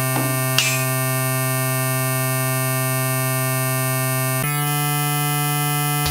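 Electronic music: a sustained synthesizer drone of many steady tones, with a short noisy sweep about half a second in and a shift in the held chord a little after four seconds.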